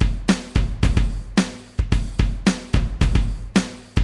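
GarageBand's Smart Drums Live Rock Kit playing a steady rock beat from the iPad, kick drum and snare, with a strong snare hit about once a second.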